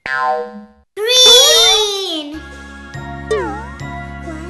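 Cartoon sound effects: a short sound falling in pitch, then a loud sliding-pitch effect about a second in. Light children's background music with sliding notes starts about two and a half seconds in.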